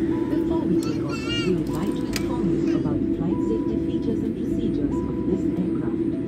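Steady low drone of an airliner's cabin as a Boeing 787 Dreamliner taxis, with a high voice briefly rising over it about a second in.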